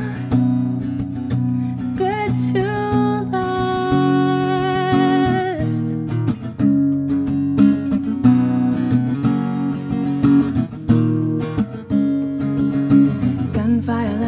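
Acoustic guitar strumming chords under a woman singing, her last phrase ending in one long note with vibrato about five seconds in. After that the guitar carries on alone with a steady strum.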